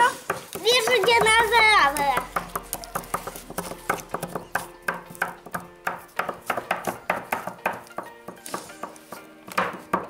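Small digging tools from a toy dinosaur-egg excavation kit tapping and scraping at its hard block, a quick irregular run of light clicks and chips. A child's voice is heard briefly at the start.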